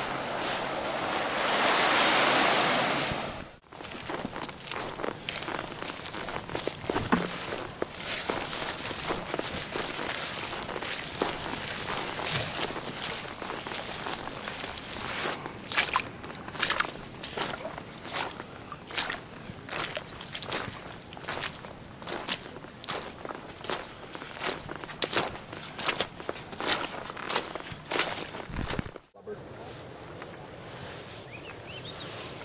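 A loud, even rushing noise for the first three seconds or so, cut off abruptly. Then a hiker's irregular footsteps over beach stones and rock, each step a sharp click or scrape.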